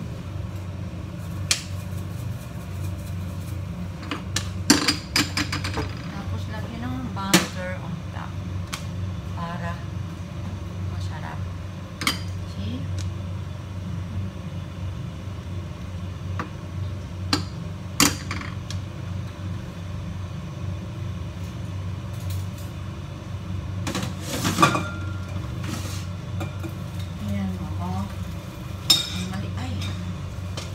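A steady low hum with scattered sharp clicks and knocks of a frying pan and utensils being handled on a gas stove.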